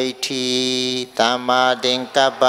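A Buddhist monk chanting a recitation into a microphone. His voice holds one long steady note for most of a second, then moves into a run of shorter syllables.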